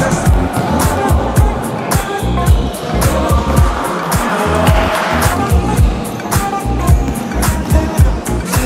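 Background music: an instrumental beat with heavy bass and regular, steady drum hits.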